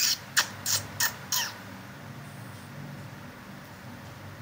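A bird's short squawks, five in quick succession in the first second and a half, some falling in pitch, followed by a faint steady low hum.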